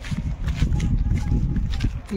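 Wind and handling noise rumbling on a handheld phone microphone, with footsteps on a road as the person walks.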